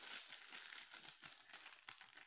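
Faint rustling with small clicks as a stack of trading cards is handled and squared up.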